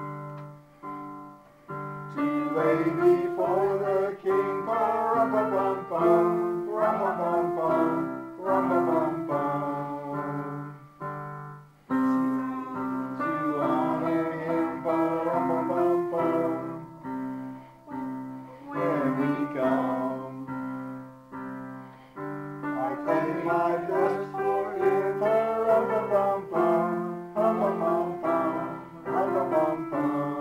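Piano playing a song, with a small group singing along from song sheets.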